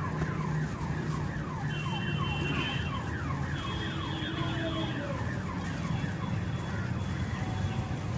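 An electronic alarm repeating a fast series of falling-pitch sweeps, about three a second, over a steady low hum.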